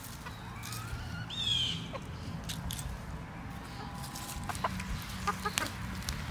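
Hens calling close by, with one loud high call that drops in pitch about a second and a half in. A few short sharp clicks come near the end.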